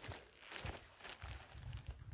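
Faint footsteps walking over grassy, sandy ground, a few soft irregular steps.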